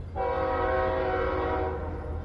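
Diesel locomotive air horn sounding one steady blast of about a second and a half, several chime notes at once, starting abruptly. A steady low rumble continues underneath.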